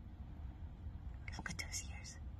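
A woman whispering a word or two briefly in the second half, over a low steady rumble.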